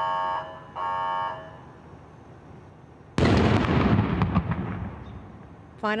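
Two short, steady warning-horn blasts about a second apart, then about three seconds in a sudden loud explosion that dies away over about two seconds: the bomb squad's controlled detonation of a suspected homemade explosive device.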